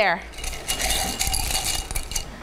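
Light rattling and clinking of small hard objects being handled, a quick run of many small clicks.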